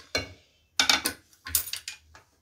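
A pressure cooker's metal lid being worked free and lifted off the pot. It makes three short bursts of metal scraping and clinking on metal.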